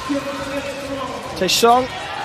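Speech: a male sports commentator calls out a skater's name, holding the first word for nearly a second before the second.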